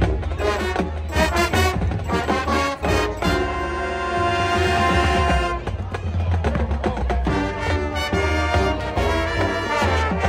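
High school marching band playing: rhythmic brass and percussion, breaking about three seconds in into a long held chord, then going back to a rhythmic passage about halfway through.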